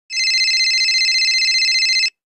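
Telephone ringing: one continuous high, rapidly warbling electronic ring, about two seconds long, that cuts off abruptly as the call is picked up.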